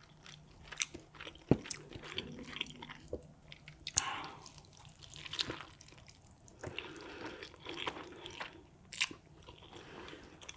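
Close-miked mouth sounds of eating a spicy noodle wrap: wet, irregular chewing with sharp smacking clicks, the loudest about a second and a half in, four seconds in and nine seconds in.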